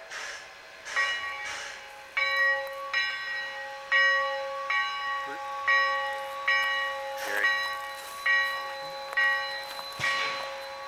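Steam locomotive's bell ringing steadily, one ringing strike about every three quarters of a second, starting about two seconds in. A few short noisy bursts come before the bell starts.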